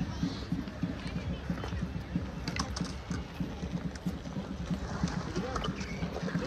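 A small skateboard's wheels rolling over concrete: a steady low rumble with fast rattling ticks, and a few sharp clacks about two and a half seconds in.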